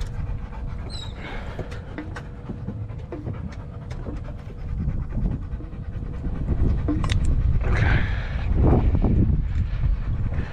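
A dog panting close by, louder in the second half, over a steady low rumble.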